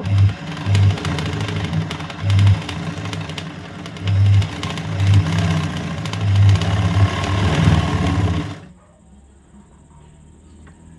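Sewing machine running fast while stitching free-motion embroidery on hooped fabric, its motor speed surging up and down, then stopping abruptly near the end.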